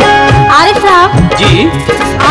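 Qawwali ensemble music: harmonium and electronic keyboard playing a sliding, bending melody over sustained drone notes, with regular hand-drum strokes from tabla and dholak.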